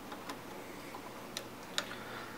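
A few faint, sharp clicks over low background hiss: a small screw being turned by the fingertips to fasten the new RCA cable board inside a Technics 1200 turntable.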